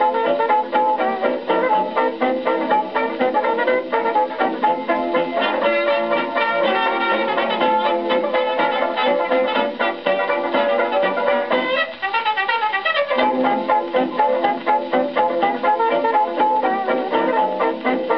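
A Brunswick 78 rpm record of a novelty dance band played through a large-horn EMG acoustic gramophone: an instrumental dance-band passage led by brass, with fiddle and plucked strings, and a sliding run about twelve seconds in.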